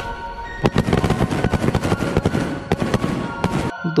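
A ground firework on concrete fizzing briefly, then going off in a rapid, irregular run of sharp cracks and pops from about half a second in, stopping just before the end.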